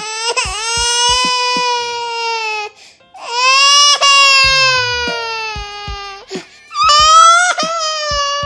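Three long, high-pitched crying wails, each drawn out and sinking slightly in pitch, over background music with short low beats.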